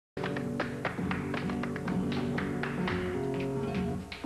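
Flamenco music, with sharp percussive strikes landing about three times a second in an uneven rhythm over sustained pitched notes.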